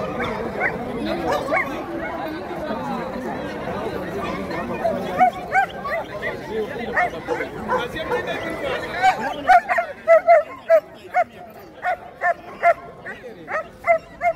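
Crowd chatter, with a dog barking repeatedly from about five seconds in; the barks grow louder and quicker, about two a second, over the last few seconds.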